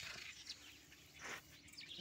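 Faint bird chirps in a quiet outdoor background, with one brief soft rustle about a second in.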